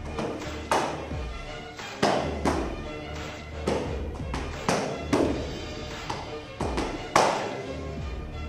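Boxing-gloved punches and kicks smacking against focus mitts: about ten sharp hits, often in quick pairs, the loudest near the end. Background music plays underneath.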